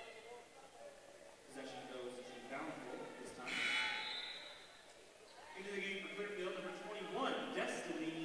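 Voices in the gym chanting in long held notes that step between pitches, in two stretches: one starting about a second and a half in, the other starting near the middle.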